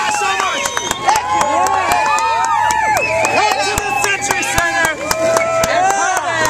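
Crowd cheering, whooping and yelling: many overlapping voices rising and falling, with scattered sharp claps.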